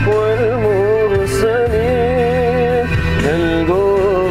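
A sholawat sung in Arabic by a solo voice, the melody wavering and ornamented, over a steady low instrumental backing; the voice breaks off briefly about three seconds in.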